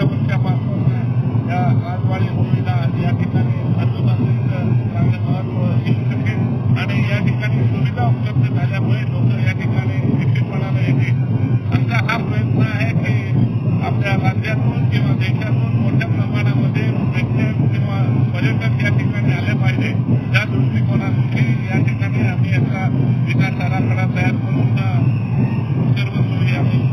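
A man speaking into news microphones over dense, loud crowd noise, with a steady low drone underneath.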